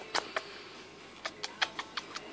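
African grey parrot climbing down a cotton rope perch, gripping with beak and feet: a run of light, irregular clicks and taps, a couple near the start and a quicker cluster in the second half.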